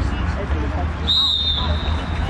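A referee's whistle blowing one steady, high blast that starts about a second in and lasts about a second, over a steady low rumble on the microphone.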